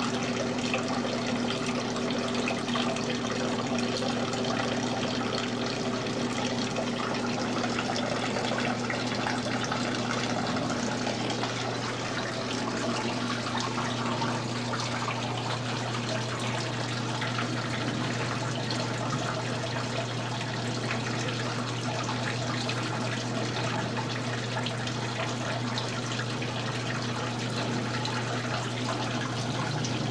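Steady rush of running water from a model waterfall, over a steady low hum.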